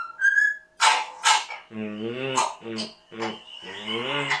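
A pet cockatiel whistling a short tune, then two harsh noisy bursts about a second in, followed by a low voice.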